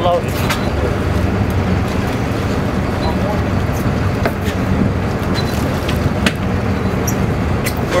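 Boat engine running steadily: a loud, even low rumble, with a few short sharp knocks scattered through.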